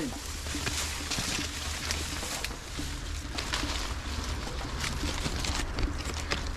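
Leaves, stems and tall grass rustling and crackling as someone pushes through dense brush, with a steady low rumble underneath.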